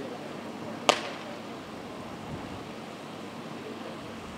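A road flare being struck alight: one sharp crack about a second in, over a steady background hiss.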